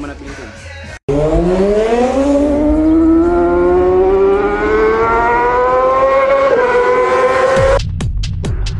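A single pitched sound with a steady rising pitch, like an engine winding up, climbing smoothly for almost seven seconds. It starts abruptly after a brief dropout about a second in and cuts off suddenly near the end.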